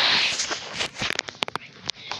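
Handling noise from a camera moved low across carpet: a rubbing hiss at the start, then a quick run of sharp clicks about a second in.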